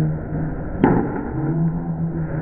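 A candlepin bowling ball strikes the pins with a single sharp crack a little under a second in, over the steady din of the bowling alley. A low steady hum follows the crack.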